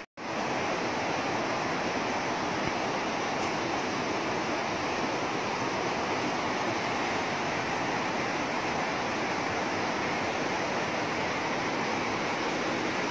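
Steady rush of river water flowing over a rocky bed, an even hiss with no breaks.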